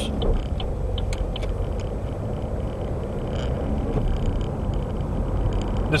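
Steady road and engine noise heard from inside a moving car.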